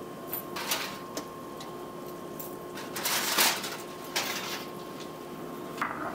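A foil-covered baking dish of chicken being taken out of an electric oven and set on the counter: a few scrapes, knocks and rustles, the loudest about three seconds in, over a faint steady hum.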